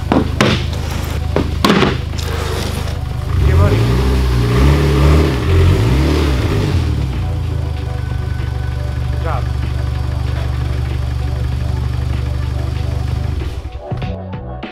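Mitsubishi Lancer Evolution X's turbocharged four-cylinder engine idling, with a few sharp knocks in the first two seconds; a few seconds in, the engine note rises and falls for about three seconds as the car is driven up onto ramps, then it settles back to a steady idle and cuts off just before the end.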